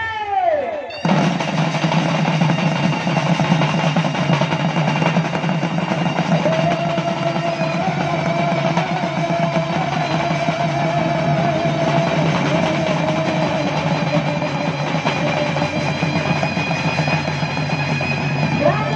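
Ensemble of Sambalpuri folk barrel drums playing a fast, dense rhythm that starts suddenly about a second in. A held, wavering melody line joins over the drums about six seconds in.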